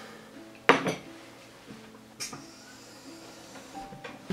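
Plates and cutlery clinking on a table: a sharp clink about a second in, the loudest sound, and another about two seconds in.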